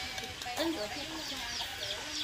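Chickens clucking in short pitched calls, with many quick high chirps running through.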